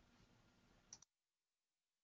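Near silence: faint hiss from an open microphone, then a quick double click of a computer mouse about a second in, after which the sound cuts off abruptly to dead silence, as when the microphone is muted.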